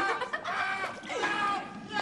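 Chickens clucking, a string of short calls.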